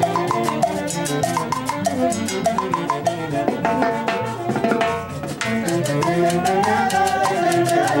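Live band with brass and drums playing a dance tune: horns carry a moving melody over a steady beat on timbales and drum kit.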